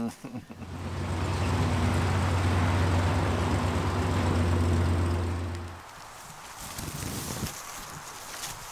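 Fire truck's engine running steadily with a low hum, then stopping suddenly about six seconds in. Quieter outdoor background follows.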